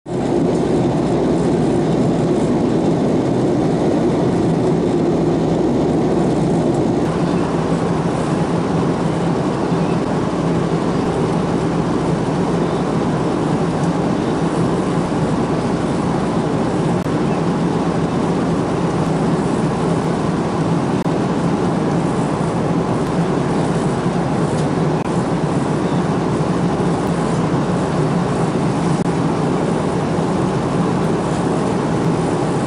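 Airliner cabin noise in flight: a loud, steady drone of jet engines and rushing air, with a low hum beneath. The hiss brightens slightly about seven seconds in.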